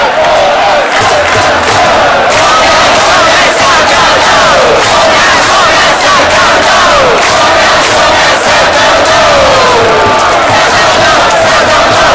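Loud stadium crowd of baseball fans shouting and chanting together, many voices at once with long calls that slide down in pitch now and then.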